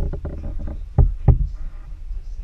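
Rumble and knocking from a camera being swung and jostled close to the floor, with two heavy thumps about a second in, a third of a second apart.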